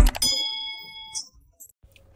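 Subscribe-animation sound effect: a click and then a single bell-like ding that rings on and fades out over about a second.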